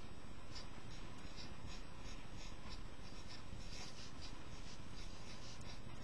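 Marker pen writing on a white surface: a run of short, quick scratchy strokes over a steady hiss.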